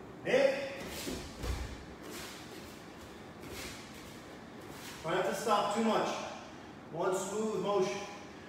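A man's voice calls out short phrases twice, a couple of seconds apart, in the second half. Earlier there are a few short rushing noises and a soft low thump as a karateka drills footwork and punches barefoot on the mats.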